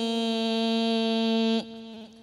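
A man's voice chanting a Buddhist devotional verse holds one long steady note, which falls away about one and a half seconds in.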